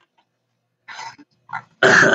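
A man laughing: short breathy bursts of laughter start about a second in, and the loudest comes near the end.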